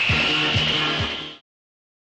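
Film soundtrack music with a low moving bass line under a steady high tone, cut off abruptly about a second and a half in, then silence.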